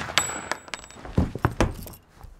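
Just after a gunshot, a brief high metallic ring and a few clinks, then several dull thuds a little over a second in, with one heavy thud among them.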